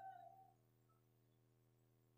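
Near silence: the tail of a man's long-drawn-out word over a microphone fades away in the first half second, leaving only a faint steady hum.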